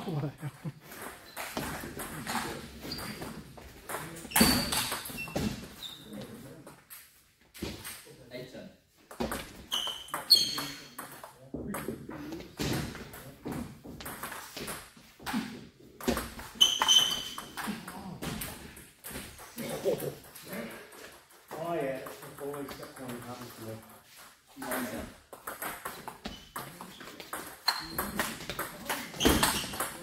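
Table tennis rally: the ball clicks sharply off the paddles and table in quick, irregular series of hits, with short pauses between points.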